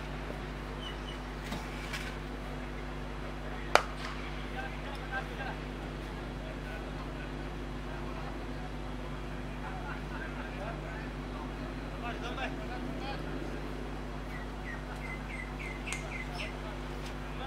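Faint distant voices and a few bird chirps over a steady low hum, with one sharp knock about four seconds in.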